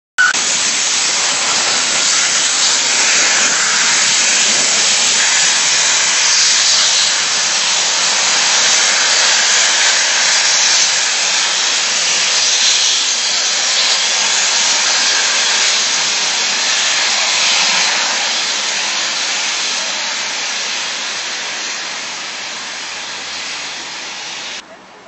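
Steam locomotive venting steam in a loud, steady hiss that slowly fades over the last few seconds.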